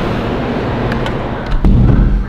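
City street traffic heard through an open upper-floor window, a steady low hum of cars, with a few light clicks and a louder low rumble near the end.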